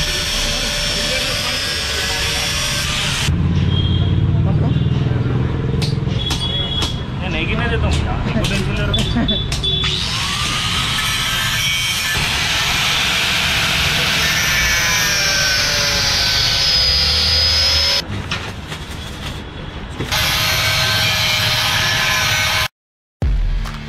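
Handheld electric angle grinder cutting metal, a hard hiss over a whining motor whose pitch sags and recovers as the disc bites and eases. It runs in several passes, with a short let-up near the end.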